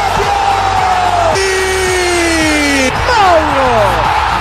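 Background music with long drawn-out yells over it, each sliding slowly down in pitch, two of them overlapping in the middle, then quicker falling whoops near the end.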